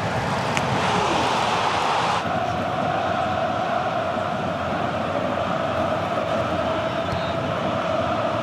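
Steady stadium ambience from a football broadcast, an even rushing noise, with an abrupt change in its sound about two seconds in.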